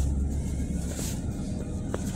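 Hydraulic elevator car running with a steady low rumble, a sharp click about a second in and another near the end.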